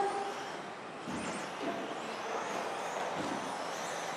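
Electric 1/10-scale 2WD stock buggies with 17.5-turn brushless motors running laps on an indoor turf track: a steady hiss of motors and tyres in a large hall, with a faint high motor whine rising and falling about a second in.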